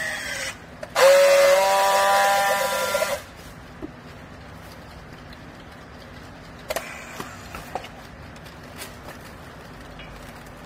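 Handheld electric strapping tool running on a plastic bale strap: its motor whines loudly for about two seconds, the pitch rising slightly at first and then holding before it cuts off. A few light clicks follow several seconds later.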